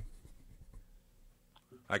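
Faint handling noises: a light knock, then small scattered taps and rustles, like papers being handled. A man starts to speak at the very end.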